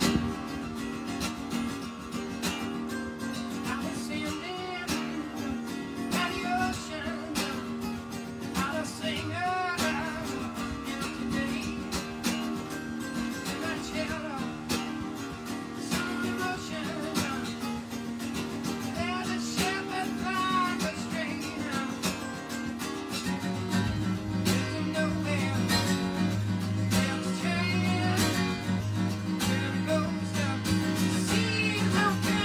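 Acoustic guitar strummed in a steady chord pattern. About three-quarters of the way through, deeper bass notes come in and the playing gets a little louder.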